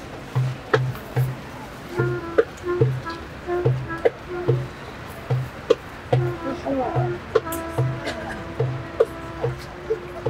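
Live traditional street music: a wind instrument plays a melody over a steady low drumbeat of about two strokes a second, with scattered sharp percussive clicks. The melody breaks into short notes early on and holds longer notes in the last few seconds.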